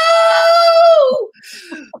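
A woman's long, high-pitched wail held on one pitch for about a second and then falling away. It is a mock cry of frustration, acted out in the telling.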